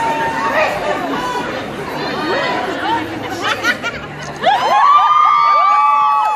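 Concert audience chattering in a large hall. About four and a half seconds in, several fans break into long, held cheers together, the loudest part.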